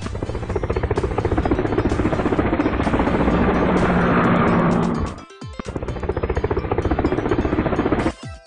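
A rapid, evenly pulsing chop, like a helicopter's rotor, on an added soundtrack. It drops out briefly about five seconds in, then resumes.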